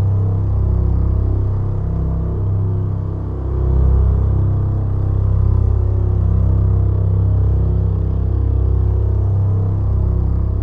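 Dark, brooding background music with sustained deep bass notes.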